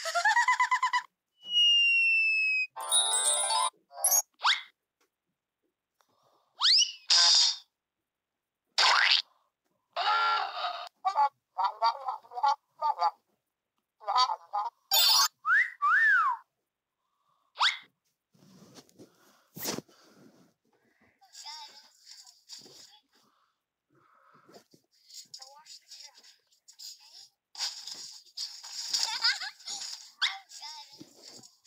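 A run of short cartoon sound effects previewed one after another from a phone video-editing app's library, each cut off by silence: a laugh, whistles and a falling whistle glide among them. After about 18 seconds the effects stop and only faint scattered background sound remains.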